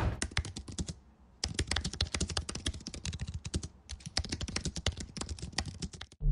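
Fast typing on a computer keyboard: rapid runs of keystroke clicks in three bursts, broken by two short pauses, about a second in and again near four seconds.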